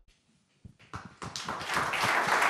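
Audience applause: a few scattered hand claps begin about half a second in and build quickly into steady clapping.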